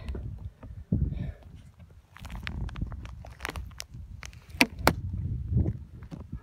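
Wind rumbling and buffeting on a phone microphone carried on a moving bicycle, with a few sharp clicks and knocks about four to five seconds in.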